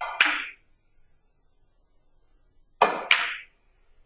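Three-cushion carom billiard shot: the cue tip strikes the cue ball with a sharp click, and the cue ball clicks against a nearby object ball a moment later. About three seconds in, two more sharp clicks of balls colliding ring out a fraction of a second apart.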